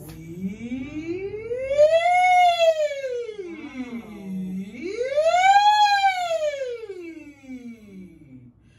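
A woman singing a vocal warm-up siren: one sustained vowel slides smoothly up about two octaves and back down, twice, the second peak a little higher. It is sung with a deliberately loose jaw and relaxed throat, resisting the urge to tighten on the way up.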